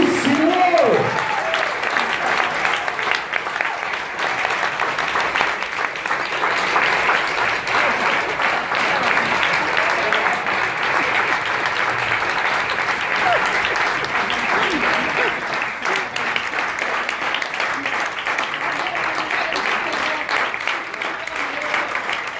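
An audience applauding steadily. The last bowed-string notes of the tango music end about a second in.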